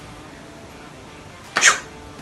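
A short, breathy vocal sound effect made with the mouth, one quick puff-like burst about one and a half seconds in, voicing the magic moment of the trick.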